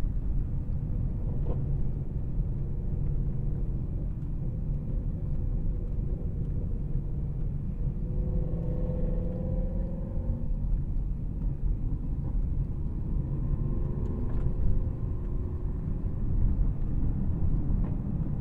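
Low, steady drone from inside the cabin of a 2023 Bentley Flying Spur Speed at cruise: road and tyre noise with the twin-turbo 6.0-litre W12 running under it. A faint engine note rises and falls around the middle and again later.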